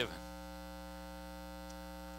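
Steady electrical mains hum with a stack of evenly spaced overtones, running on unchanged at a constant level.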